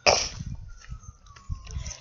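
Wind rumbling and handling noise on a handheld phone microphone during a walk, after a short breathy hiss at the start. A faint thin tone slides slowly downward through the second half.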